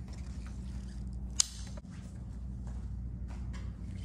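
Steady low room hum with one sharp click about a second and a half in, followed by a few faint ticks.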